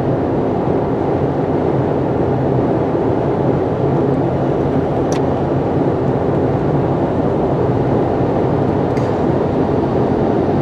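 Steady road and engine noise heard inside a car's cabin while cruising on the interstate at highway speed.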